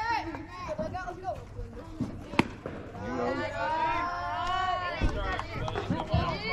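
A single sharp pop of a baseball pitch caught in the catcher's mitt, about two and a half seconds in, with spectators' voices calling out around it.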